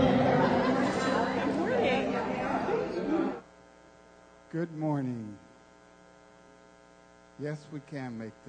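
Congregation chatter mixed with the tail of the band's music, fading and then cutting off abruptly about three seconds in. After that a steady mains hum from the sound system is left, with one short phrase from a voice over the PA about halfway through and speech starting again near the end.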